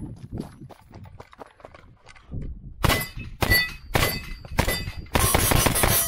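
Footsteps on gravel, then gunshots from about three seconds in: four single shots about half a second apart and then a rapid string of shots. A short metallic ring follows the hits on steel targets.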